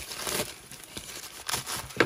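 Crumpled white packing paper crinkling and rustling as hands dig through it, with a few sharper crackles near the end.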